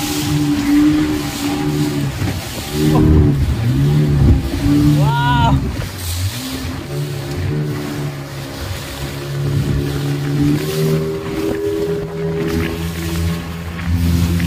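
Speedboat motor running at speed with rushing water spray and wind, voices of passengers over it, and a brief rising-and-falling cry about five seconds in.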